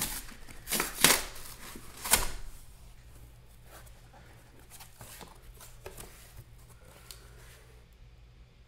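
Tape ripped off a cardboard box, with two loud tears about one and two seconds in. Quieter rustling and cardboard handling follow as the box is opened.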